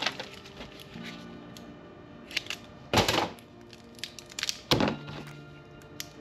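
Metal tool pieces being handled on a workbench: two sharp thunks, about three seconds in and near five seconds, with a few lighter clicks between them. Quiet background music with steady tones runs underneath.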